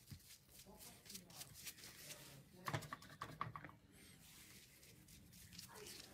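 Near silence with faint, scattered soft clicks and taps, a small cluster of them about three seconds in: a tint brush working hair colour into a mannequin's hair and gloved hands handling the strands.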